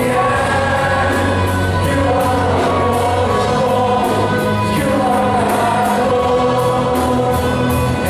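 Live worship band of drum kit, electric guitars and bass guitar playing a gospel song while many voices sing along, with a steady drum beat.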